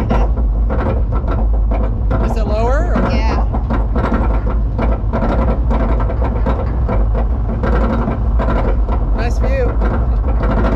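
Arrow Dynamics roller coaster train climbing its chain lift hill: a steady loud rumble with irregular rattling and clicking from the lift. A brief rising vocal whoop comes about two and a half seconds in, and another near the end.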